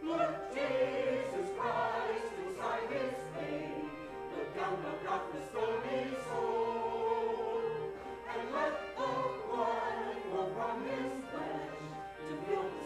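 Voices singing a hymn in the church, accompanied by the pipe organ; the singing comes in at the start after a few seconds of organ alone.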